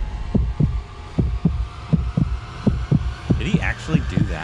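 Film-trailer soundtrack dropped to a low, heartbeat-like pulse of about four thuds a second over a steady low rumble.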